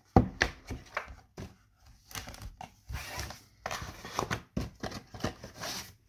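A deck of divination cards and its cardboard box handled on a table: cards shuffled and tapped, giving a string of sharp clicks and taps with a louder knock just after the start.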